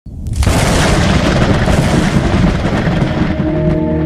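Logo intro sting: a deep cinematic boom that starts suddenly, with a long rumbling noise tail, giving way about three and a half seconds in to a held musical chord.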